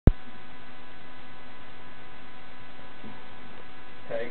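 A sharp click at the very start, then a steady electrical hum and hiss with faint unchanging tones; no guitar notes are played.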